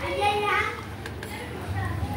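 A young child's voice, heard briefly at the start, then quieter, over a steady low hum.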